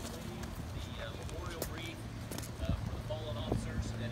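Faint voices of people talking in an outdoor crowd, with a steady low hum beneath and a few footsteps clicking on pavement.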